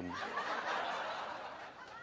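A man's breathy, voiceless laugh, a long hiss of breath that slowly fades away.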